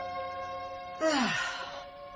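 Sustained music notes fading out, then about a second in a loud sigh, an exhaled breath with a falling pitch.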